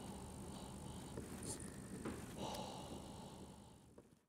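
Faint background music with plucked-string notes, fading out at the end.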